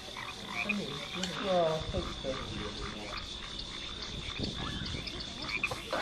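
Nature-soundtrack ambience: a steady chorus of croaking animal calls, with a high steady tone running under it.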